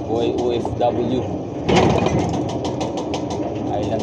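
Steady running hum of a forklift-type materials-handling machine, with a short, louder noisy rush about two seconds in.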